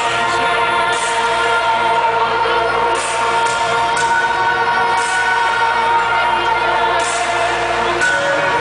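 Hardcore gabber track played loud over a large venue's sound system: held chords over a steady low bass drone, with no kick drum beating.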